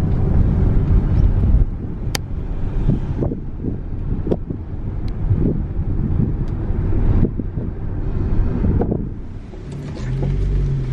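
Road noise inside a moving car's cabin: a steady low rumble of engine and tyres, a little louder for the first second or two before settling.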